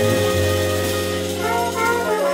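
Live jazz-fusion band with trumpet, keyboards and drum kit playing: long held low notes and chords, with a short stepping melody in a higher register in the second half.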